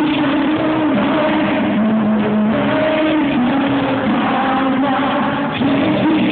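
Male singer and band performing a song live in an arena, heard from among the audience; the sung melody moves in long held notes over a dense, noisy mix.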